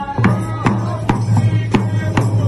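Dhol drum beaten in a steady rhythm of about two strokes a second, under a group of men singing a folk Holi song.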